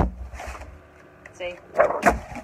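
A plastic craft cutting mat handled against a tabletop: a sharp knock right at the start, then a brief louder rustling flex of the mat near the end as it is moved.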